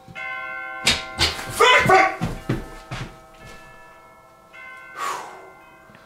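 A loft hatch being pushed open with a pole and a folding aluminium loft ladder shifting inside it: a run of clunks and metallic scrapes in the first three seconds, then a short rattle near the end. Sustained chime-like background music plays throughout.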